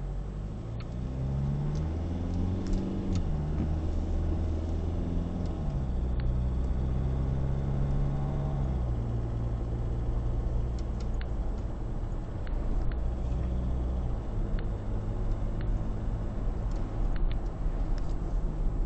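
Car engine heard from inside the cabin while driving, its revs climbing and then dropping several times as it goes through the gears, over steady road rumble.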